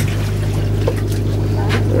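Steady low drone of a boat's engine, with a hiss of wind and water over it.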